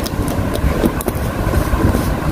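Steady low rumbling background noise, with a few faint light clicks.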